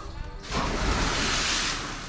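Loud rushing wind noise on a body-worn camera's microphone as a jumper drops off a bridge on a rope swing. It starts about half a second in and holds steady for over a second.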